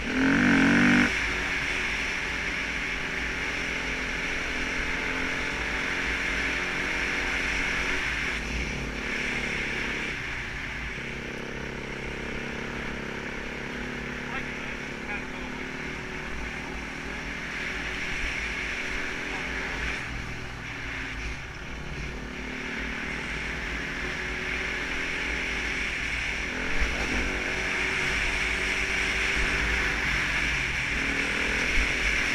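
Enduro motorcycle engine running along at steady revs, its pitch rising and falling gently with the throttle, over a constant rush of wind noise. A louder burst of revs comes in the first second.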